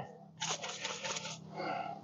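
Shaker bottle of dry beef rub being shaken over burger patties, the seasoning granules rattling in quick shakes for about a second.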